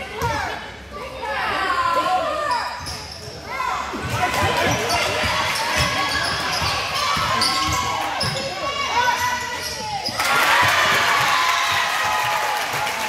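Gym crowd and players shouting and talking over a basketball bouncing on the hardwood floor. The crowd noise swells into cheering and clapping near the end.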